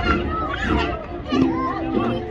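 Many young voices talking and calling out at once, overlapping chatter from youth football players and onlookers along the sideline.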